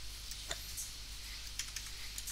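Computer keyboard keys tapped a few times: separate sharp clicks, the loudest about half a second in and a quick cluster near the end, over a steady low hum.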